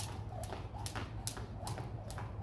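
Jump rope slapping a concrete walkway, sharp ticks about twice a second as it strikes the ground, over a steady low hum.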